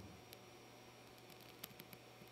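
Near silence: faint room tone with a low hum. A few faint clicks come about a second and a half in, from a computer mouse as a slider is dragged.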